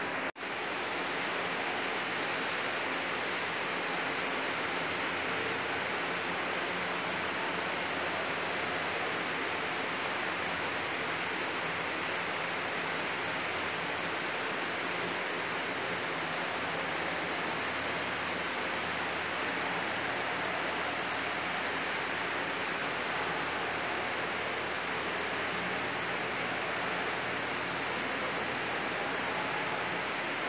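Steady, even hiss with no distinct events, briefly cutting out just after the start.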